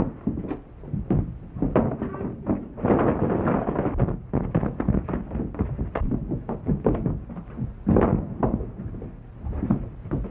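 Fistfight: an irregular run of punches, thuds and scuffling as two men grapple and roll on the floor, busiest about three seconds in and again near the end.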